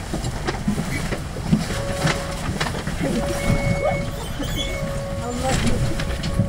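Large diesel city bus idling at a stop, heard from inside the cabin as a low steady rumble, with another bus pulling away outside. A thin steady tone comes in about two seconds in and runs on.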